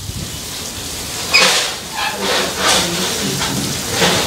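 Indistinct voices of a small group of men talking over a steady hiss of noise.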